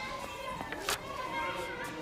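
Background chatter of children's voices, many at once and none standing out, with a single sharp click about a second in.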